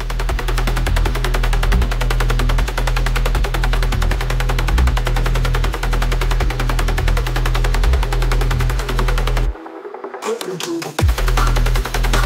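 Dark techno / industrial electronic track: a fast, rapid-fire pulsing pattern over a steady deep bass. The bass and top end drop out briefly about nine and a half seconds in, and the full beat comes back about a second and a half later.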